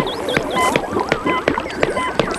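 Electronic bleeps, warbling tones and rapid clicks: the sound effects of laboratory machines in a cartoon.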